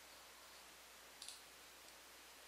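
Near silence broken by a single computer mouse click a little past a second in, then a fainter tick near the end.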